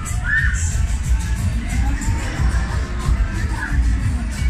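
Loud fairground ride music with a heavy bass beat, and riders on a giant swinging pendulum ride screaming. One scream comes about a third of a second in, another near the end.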